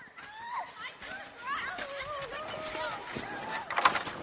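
Distant children's voices calling and shouting, with no words that can be made out, and a few short noisy sounds near the end.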